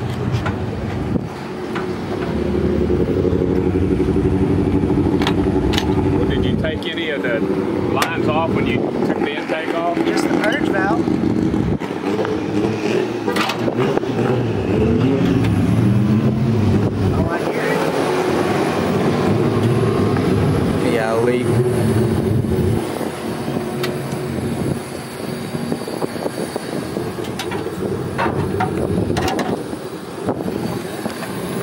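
A car engine running, its low drone rising and falling in pitch through the middle, with people talking in the background.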